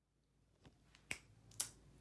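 Three faint, sharp clicks about half a second apart over quiet room tone.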